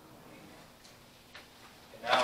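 Very quiet room tone in a large room, with two faint small clicks about a second apart in the middle.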